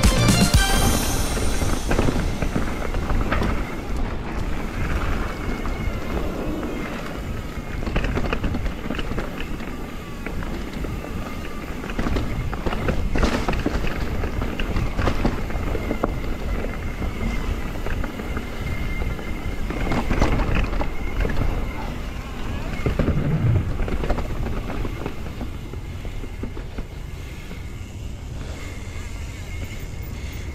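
Mountain bike riding down a leaf-covered dirt trail: steady tyre and ground noise with wind on the microphone, broken by occasional sharp knocks and rattles from the bike over bumps. Music ends just after the start.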